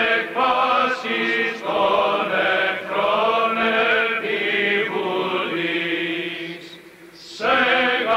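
Greek Orthodox Byzantine chant: voices singing long, held phrases with short breaks, then a brief lull near the end before the chanting resumes.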